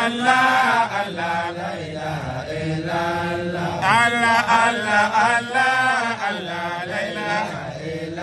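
A group of men chanting together in an Islamic dhikr, repeating the name "Allah" in a sustained, melodic chant that carries on without a break.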